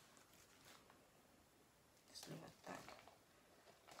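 Near silence, with two faint short rustles about two and three seconds in, from a potted orchid and its clear plastic pot being handled.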